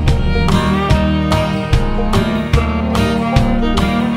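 Country band playing an instrumental passage: fiddle over strummed acoustic guitar, with a steady beat.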